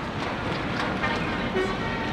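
Heavy trucks' engines running in a passing convoy, with a truck's horn starting about a second in and held as one steady tone.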